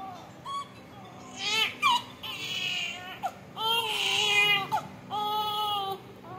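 Newborn baby with respiratory distress syndrome crying: a brief cry, then four longer wails of about a second each, with short breaths between them.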